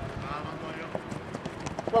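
Football players' feet and the ball on an artificial-turf pitch: scattered light taps and thuds of running and ball touches, with a faint call from a player shortly after the start.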